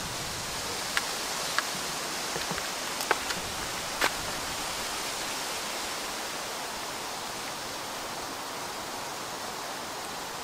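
Steady outdoor background hiss, with a few short sharp clicks in the first four seconds from a car wiring harness and its plastic connectors being handled.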